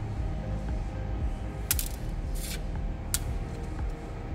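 Three short rasping strokes of small pau-ferro seeds rubbed on 320-grit sandpaper over a steel tray, scarifying the hard seed coat, over a steady low background hum.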